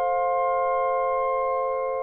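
Clarinet quartet of E-flat, B-flat, alto and bass clarinets holding a sustained chord of several steady, pure-sounding notes.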